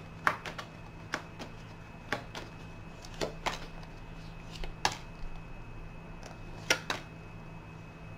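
A tarot deck being shuffled by hand: scattered short clicks and taps of the cards, irregular, roughly one or two a second, over a faint steady low hum.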